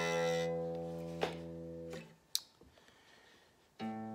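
Electric guitar's open low E string ringing, then damped about halfway through, followed by a short click. Near the end the open A string is plucked and starts to ring.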